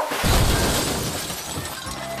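A sudden loud crash with shattering glass, tumbling on and fading over about two seconds as a man falls over.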